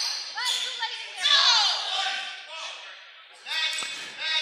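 Players' voices and short sneaker squeaks on the hardwood floor, echoing in a gymnasium, with a single basketball bounce near the end.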